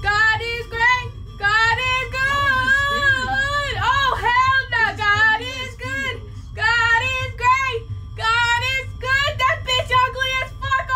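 A high, childlike voice singing in drawn-out phrases, with short breaks between them.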